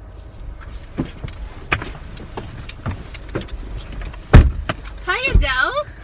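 Inside a car cabin, with a low steady rumble, a car door shuts with a heavy thump about four seconds in, after scattered clicks and rustling. A second, softer thump follows, and excited voices rise near the end.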